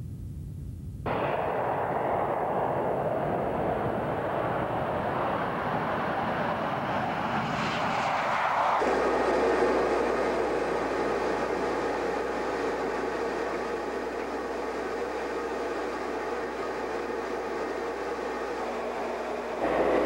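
F-15 Eagle twin-turbofan jet noise on takeoff. It starts abruptly about a second in and builds to its loudest around nine seconds in. It then changes suddenly to a steadier jet sound with a low hum underneath.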